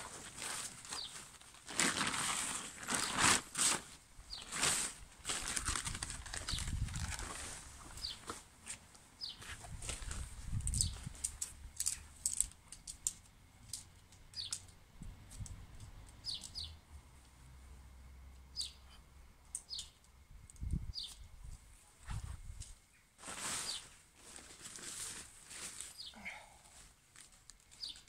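Nylon tent fabric rustling and flapping as a one-man tent's inner is unfolded and spread out, with irregular clicks and knocks from its shock-corded poles being slotted together.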